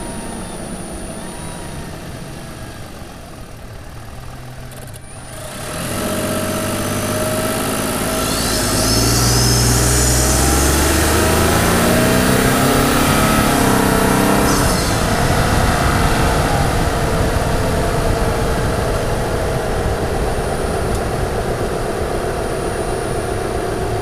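Toyota Tundra's 3.4-litre twin-turbo V6, heard through a mic under the hood and breathing through a TRD performance air filter, in normal drive mode. It runs steadily at first, then about six seconds in it gets louder and rises in pitch under acceleration, with a rising high turbo whistle. The whistle cuts off about fifteen seconds in and the engine settles to a steady run.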